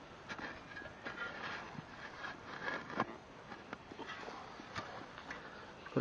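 Shovel blade scraping and cutting into soil in a small dug hole, faint, with a few short knocks scattered through.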